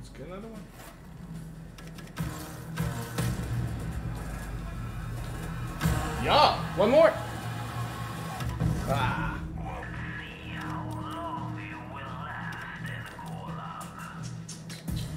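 Slot game's background music and sound effects playing steadily, with a voice heard in snatches, loudest about six to seven seconds in.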